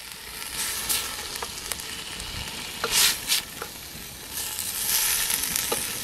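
Wooden spoon stirring soup in a stainless steel pot over a charcoal fire, with short scrapes and knocks against the pot, the loudest about three seconds in, over a steady sizzle.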